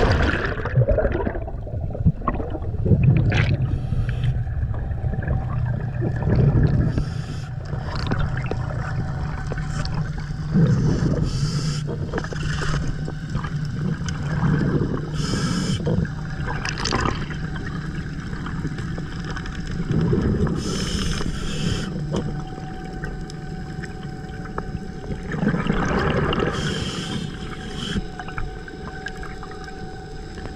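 A diver plunging into the sea with a loud splash, then muffled underwater sound from the camera as he descends: rushing water and bubbles over a steady low hum, broken by several short gurgling bursts.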